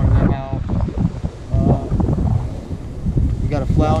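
Wind buffeting the microphone in a low, uneven rumble, with a man's voice breaking through in short snatches.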